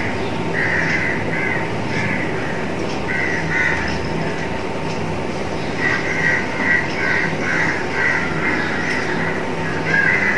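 Birds calling in clusters of short, repeated calls over a steady background hum.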